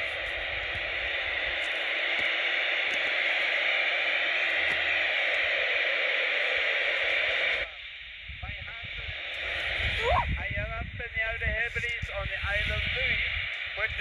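CB radio set hissing with steady open-channel static. About seven and a half seconds in, the hiss cuts off suddenly as a station keys up, and a distant operator's voice comes through the radio's speaker, faint at first and then clearer.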